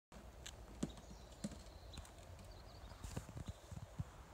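Footsteps on dirt ground, heard as a series of irregular thuds. A sharper thud comes just under a second in and another about half a second later, with a quicker cluster near the end.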